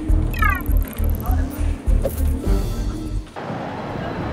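Background music with a steady bass beat and a short run of quick pitched electronic blips about half a second in. The music cuts off suddenly a little over three seconds in, leaving a steady hum of street noise.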